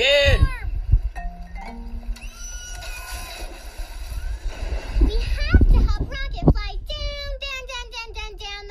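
Cartoon soundtrack playing through a tablet's speaker. A character calls "Rocket, transform!", then steady electronic tones and music play as the rocket changes, and a child starts singing near the end.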